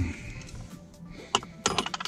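Quiet background music, with one sharp metallic click about a second and a half in and a quick run of small clinks just after: metal parts of a car shifter and an Allen key being handled.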